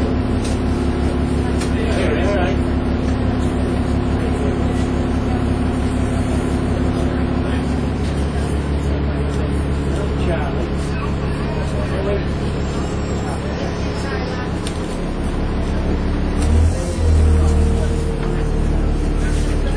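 Dennis Trident 2 double-decker bus's diesel engine and drivetrain heard from inside the passenger saloon, running steadily as the bus drives along. The engine note changes about halfway through, and near the end there is a louder low surge as a new steady whine comes in.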